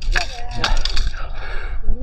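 Strong wind buffeting the phone's microphone, with a burst of crackling and rustling in the first second.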